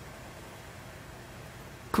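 A pause in speech: faint, steady room tone, with a man's voice starting again at the very end.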